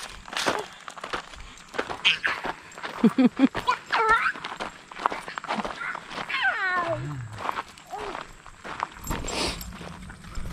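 Footsteps crunching on a gravel road, with a toddler's wordless vocal sounds: short high calls about four seconds in and a long falling whine a couple of seconds later.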